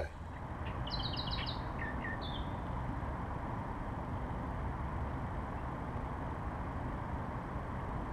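A bird chirping a quick run of about five short high notes about a second in, then a few lower notes, over a steady low background noise.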